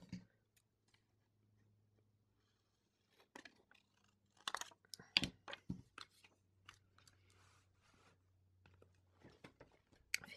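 Faint rustles and clicks of paper stickers being handled and pressed down onto a planner page, in a cluster around the middle and a few more near the end, over a low steady hum.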